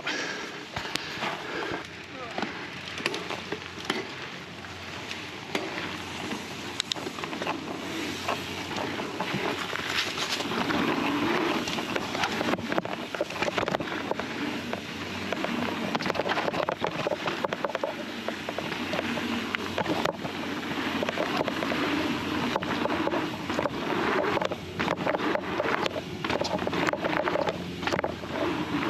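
Fezzari La Sal Peak mountain bike being ridden along a dirt trail and through berms: tyres rolling over the dirt and the bike rattling over bumps in a continuous noise, growing louder about ten seconds in.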